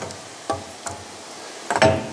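A pause in a man's talk: low, steady background noise with a brief murmur from him about half a second in and a faint click just under a second in. His speech resumes near the end.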